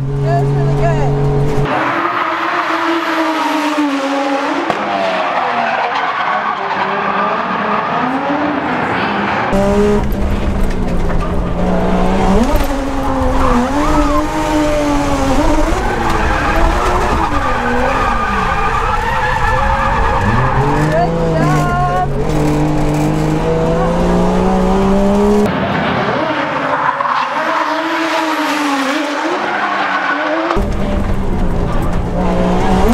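Toyota Chaser JZX100 drift car heard from inside the cabin, its engine revving up and down through drifts with tyres squealing. The sound jumps abruptly a few times where the footage is cut between sections of the lap.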